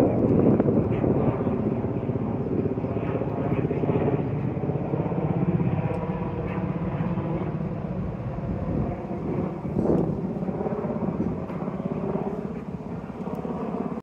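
Airshow aircraft engine noise passing over, a steady low rumble that is loudest at the start and slowly fades, with a brief swell about ten seconds in.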